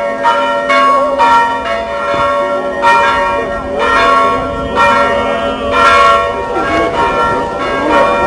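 Church bells ringing: several bells of different pitch struck repeatedly in an uneven, fast pattern, each strike ringing on.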